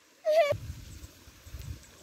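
One short, high, wavering cry about a quarter second in, followed by a faint low rumble.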